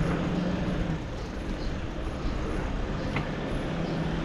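Street traffic noise with a motor vehicle's steady low engine hum, strongest in the first second and again near the end, over a low rumble of wind on the microphone as the bicycle rides along.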